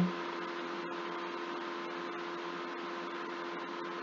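Steady electrical hum with a constant hiss, which the uploader takes for computer noise picked up by the microphone.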